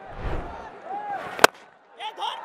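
A cricket bat striking the ball: one sharp crack about one and a half seconds in, the batter hitting the delivery hard.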